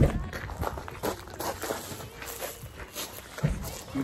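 Wind buffeting a phone's microphone in uneven low rumbles, with a sharp handling knock at the start.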